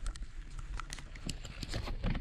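Gravel bike rolling slowly over fallen leaves: a run of irregular crackles and ticks from the tyres and drivetrain, over a low wind rumble on the helmet or bike camera's mic.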